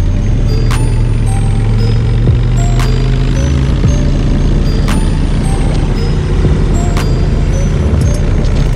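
Background music with a steady deep bass and a sharp hit about every two seconds.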